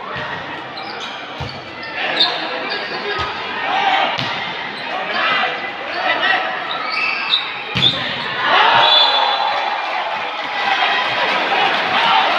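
A volleyball being struck several times during a rally in a large, echoing sports hall, over a continuous babble of spectators' voices. A hard hit about two-thirds of the way through sets off a loud burst of crowd shouting and cheering.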